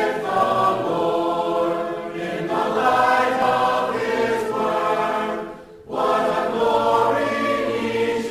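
Choir singing held chords, with a short break between phrases about five and a half seconds in.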